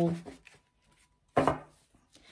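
One short, sharp knock about a second and a half in, a tarot deck being handled and tapped on the cloth-covered table, after a near-silent pause.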